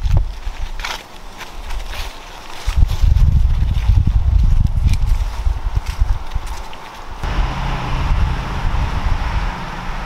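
Outdoor wind buffeting the microphone in gusts, with scattered footsteps crunching on dry fallen leaves. About seven seconds in, a steady low hum sets in suddenly.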